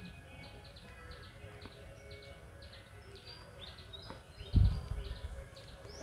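Small birds chirping, a steady run of short high chirps a couple of times a second. About four and a half seconds in there is one brief low thump.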